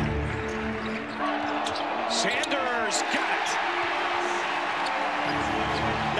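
Live basketball game sound under background music: a basketball bouncing on the hardwood court amid a steady arena din, with short sharp ticks scattered through.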